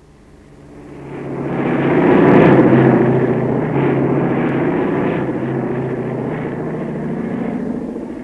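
Propeller aircraft engine droning steadily, fading in over the first two seconds.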